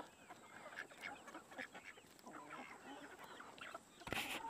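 Faint clucking and soft short calls of a flock of chickens feeding on corn scraps, with quick ticks of pecking among them.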